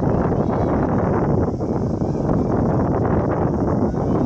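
Wind buffeting the camera microphone, a loud, steady low rumble.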